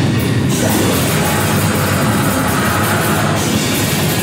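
Live metal band playing: electric guitar and drum kit with cymbals in one loud, dense, unbroken wall of sound.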